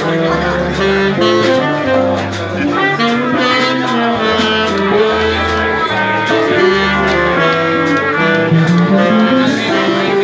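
Live jazz band: trumpet and saxophone playing a melody together over drums with evenly spaced cymbal strokes and a moving bass line.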